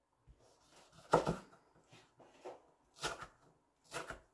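Kitchen knife cutting ripe mango on a wooden cutting board: a few separate knocks of the blade against the board, the loudest a little over a second in.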